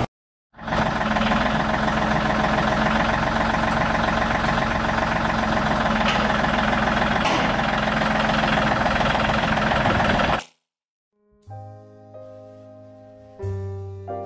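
John Deere compact tractor's diesel engine running steadily under throttle as it carries a heavy frame on its front loader forks; it cuts off sharply about ten seconds in. Soft piano music starts near the end.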